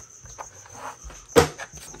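Hard plastic Hide N' Slide dog treat puzzle being handled: faint small clicks and rubbing, then one sharp plastic knock about one and a half seconds in.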